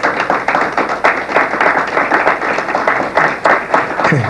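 An audience clapping: a dense, uneven patter of many hands that stops near the end.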